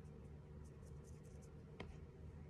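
Faint short scratching strokes of an eyebrow product's applicator tip drawn across the brow, then a single click near the end.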